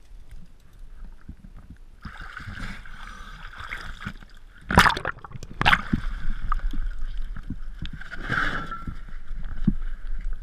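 Water sloshing and splashing as a diver climbs out of the water onto a dock, with two sharp knocks about five seconds in. After that comes wind on the microphone, with a steady high whine in the background.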